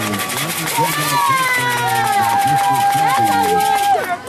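Spectators shouting and cheering, many voices overlapping at once, with one voice holding a long steady call through the second half.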